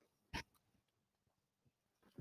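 Near silence: room tone, broken once by a single short sound about a third of a second in.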